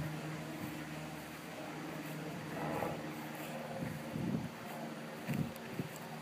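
Outdoor background noise: a steady low hum under an even hiss, with a few soft low sounds about halfway through and near the end.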